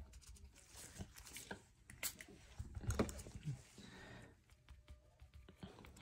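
Faint, scattered soft taps and rustles of nitrile-gloved hands handling a damp cotton pad and a trading card on a mat.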